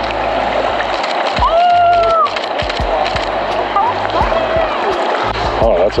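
Shallow river water running over a background of music, with a short held voice call about a second and a half in.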